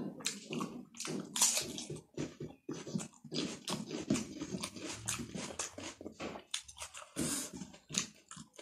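Close-up mouth sounds of a person eating rice and curry by hand: wet chewing and lip smacks in quick, irregular bursts, several a second.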